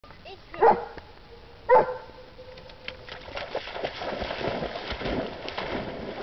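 A briard barks twice, about a second apart, then water splashes and churns more and more as the dog runs into the lake.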